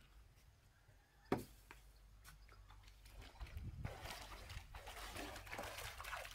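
A single sharp knock about a second in, then muddy shallow water sloshing and splashing as hands work in the mud at the foot of a wooden post, growing louder about four seconds in.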